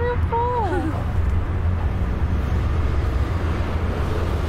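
Steady low rumble of a vehicle crossing a steel truss bridge, heard from inside.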